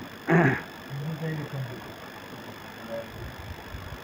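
Men's voices in a room: a short loud exclamation just after the start, then low murmured talk, fading to faint room noise.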